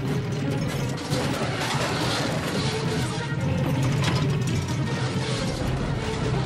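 A runaway touring caravan rolling over rough ground, its body and contents rattling and creaking steadily over a low rumble.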